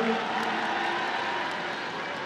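Steady background noise of a stadium crowd, with a faint murmur of spectators.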